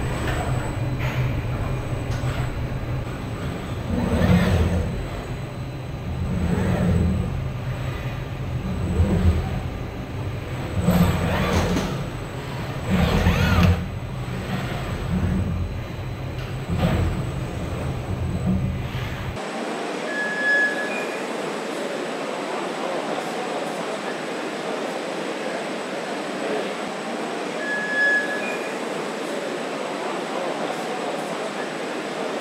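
Car-factory line noise: a low rumble with repeated clunks and swells as a car body is carried along the assembly conveyor. About two-thirds through it changes suddenly to a thinner, steady machinery hiss with two short high beeps.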